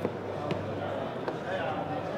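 Three sharp clicks spaced unevenly over trade-hall background noise: buttons being pressed on the inline remote of an Aukey active-noise-cancelling neckband headset.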